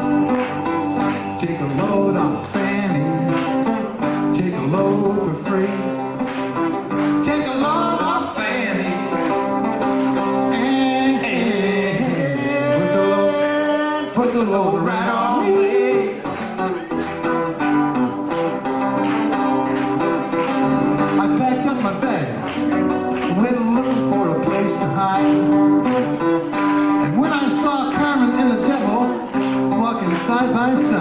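Live band music led by acoustic guitars, strummed and picked steadily, with a melody line that bends and slides in pitch over them through the middle of the passage.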